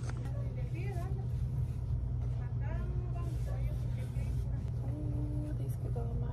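Steady low hum of a store's air-handling and background, with faint voices of other shoppers over it.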